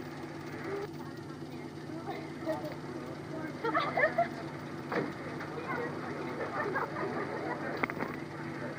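Faint, indistinct voices of people talking in the background, over a steady low hum that runs throughout.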